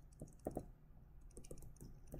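Faint taps of a stylus on a tablet screen, about half a dozen in two small groups, as short dashes of a line are drawn one by one.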